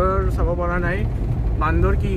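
A man's voice talking inside a moving car, over the car's steady low engine and road rumble.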